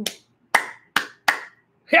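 A man clapping his hands three times, sharp claps in quick succession.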